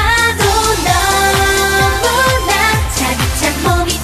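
Live K-pop song: a woman singing into a microphone over an electronic pop backing track with a steady dance beat.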